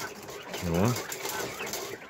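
Faint sounds from a cage of Texas white quail drinking at nipple drinkers. A man's short, low murmur comes in under a second in.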